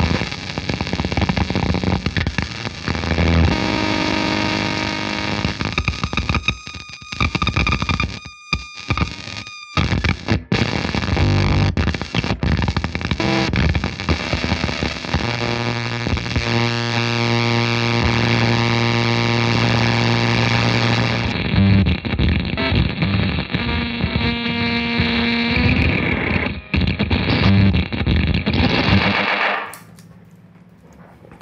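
1959 Fender Jazzmaster electric guitar played through a Devi Ever Soda Meiser octave fuzz pedal: dense, noisy fuzz tone with held notes. The sound drops out in brief gaps about a third of the way in and cuts off abruptly just before the end.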